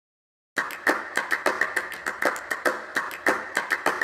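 Opening of a pop song: a rhythmic percussion pattern of sharp hits, about four a second, starting about half a second in after silence.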